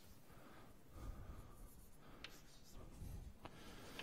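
Chalk writing on a blackboard: faint scratching strokes, with two sharp taps of the chalk on the board in the second half.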